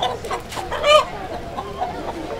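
A black rooster, held in the hands, gives one loud call just under a second in, amid softer clucking.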